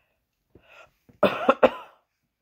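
A woman coughing into the sleeve of her sweater: a faint breath in, then three quick coughs about a second in.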